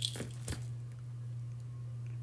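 Handling noise from a brass assemblage pendant with bead dangles being turned over in the hands: a few short clicks and rustles in the first half second, then only a steady low hum underneath.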